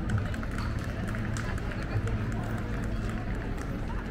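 City street ambience: passers-by talking and footsteps clicking on the pavement, over a low steady hum.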